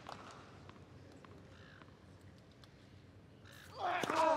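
Hushed tennis stadium crowd: a faint murmur with a few small clicks. Near the end a loud call with a falling pitch rises out of a sudden swell of crowd noise.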